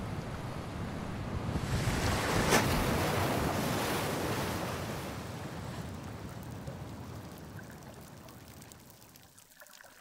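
Sea water sloshing and rushing around a camera at the surface among choppy waves. It swells to a rush about two and a half seconds in, then fades steadily, leaving faint clicking near the end.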